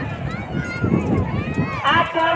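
Several people's voices shouting and calling out, rising and falling in pitch and overlapping, over a dense low rumbling background noise.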